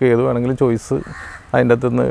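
A bird calling, heard along with a man's voice.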